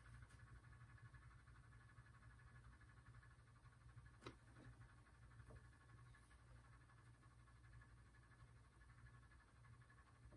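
Near silence: room tone with a steady low hum and a single faint click about four seconds in.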